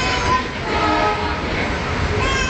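Passenger train running, heard from inside the coach: a steady low rumble of the moving carriage.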